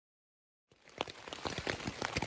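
Silence, then from about three-quarters of a second in, rain pattering on tent fabric, heard from inside the tent as a dense run of small irregular taps.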